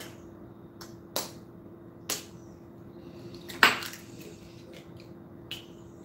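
A few sharp, separate clicks and taps of kitchen things being handled on a counter, about five in all, the loudest about three and a half seconds in, over a steady faint hum.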